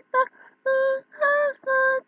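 Unaccompanied singing in a high voice: a short note, then three held notes each under half a second, with brief silent breaks between them.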